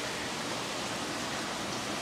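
Steady, even rush of running water from aquarium tank filtration in a fish room.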